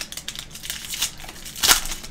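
Foil trading-card pack wrapper crinkling as it is pulled open by hand: a run of irregular crackles, with louder ones at the start and near the end.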